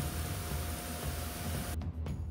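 Low ambient background music under a steady hiss with a thin steady tone; the hiss and tone cut off suddenly near the end while the low music carries on.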